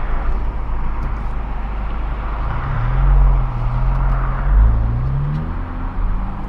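Car engine and road noise heard from inside the moving car. About three seconds in the engine note rises as the car accelerates, holds, dips briefly, and rises again near the end.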